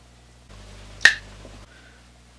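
A single sharp finger snap about a second in, over a low steady hum that starts and stops abruptly.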